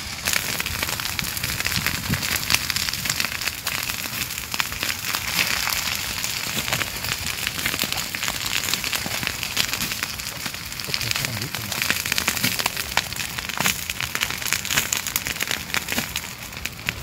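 Grass and brush fire crackling steadily, a dense run of small sharp pops through dry grass and scrub as it burns, spread by the wind.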